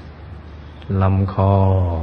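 A man's calm, slow voice in Thai, after a short pause, saying one drawn-out word at a steady, even pitch as he guides a meditation.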